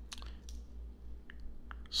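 A few faint, scattered clicks as a Zelos Swordfish dive watch on its metal link bracelet is turned over in the fingers.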